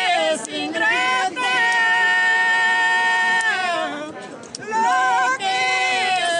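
A woman singing a yaraví, the slow Andean mestizo lament, with no instruments heard: long held notes that slide downward at the end of each phrase, a break of about a second past the middle, then the next phrase begins.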